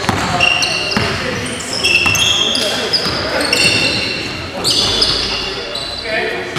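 A basketball being dribbled on a wooden gym floor during play, with sneakers squeaking in many short, high chirps. Players call out, and it all echoes in a large gym.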